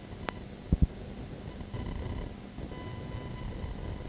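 Low rumbling noise with a faint steady hum from VHS tape playback. A sharp click comes about a quarter second in, and two low thumps come just before one second.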